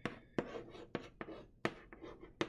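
Chalk writing on a small wooden-framed chalkboard: about five sharp taps as strokes begin, with scratching between them.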